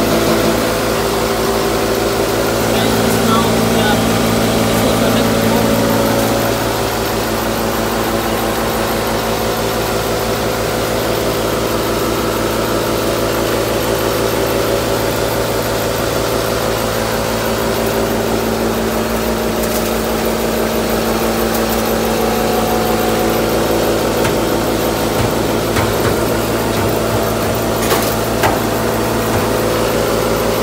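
Electric posho mill running steadily as it grinds maize into flour, with a constant motor hum under a loud, even grinding noise. The sound drops slightly about six seconds in.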